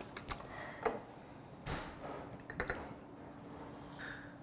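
Quiet chewing and mouth sounds through a clip-on mic, with a few light clicks of chopsticks and a glass soju bottle against the table, the sharpest about two and a half seconds in.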